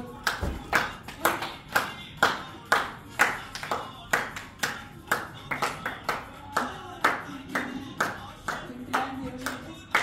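Hands clapping in a steady rhythm, about two claps a second, keeping time for a dance.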